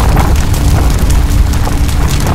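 Loud, steady low rumble of a large fire burning through piles of scrap wood, with light crackling on top.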